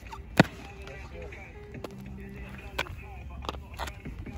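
Trainers landing on tarmac at the end of a standing long jump: one sharp thump about half a second in. A few fainter ticks and knocks follow.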